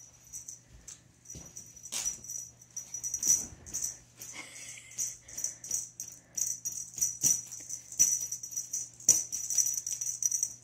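Small bells jingling in short, irregular shakes, several times a second at the busiest, over a faint steady hum.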